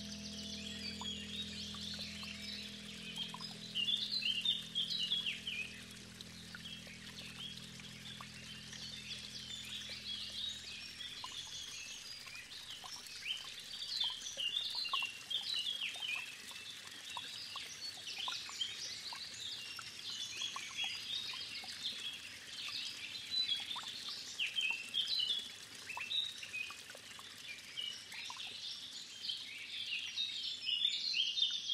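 Many birds chirping and singing together in a continuous chorus of short calls. Underneath, a low held chord from the music fades out about eleven seconds in.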